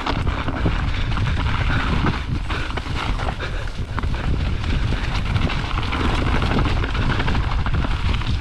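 Mountain bike descending a dirt trail at speed, heard through a GoPro's microphone: steady rumbling tyre and wind noise, with many small clicks and rattles from the bike over rough ground.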